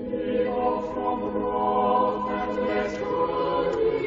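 A choir singing together in sustained notes, swelling in at the start and then holding a steady level.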